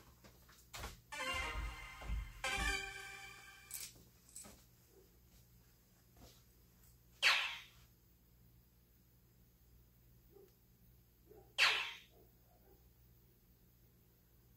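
Electronic dartboard game sound effects. A short pitched electronic jingle plays in the first few seconds, then two short sharp hit sounds come about four and a half seconds apart as the opponent's darts register.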